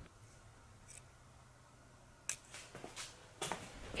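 A few faint, scattered clicks from a metal scissor-type fuel line disconnect tool being handled, the loudest near the end.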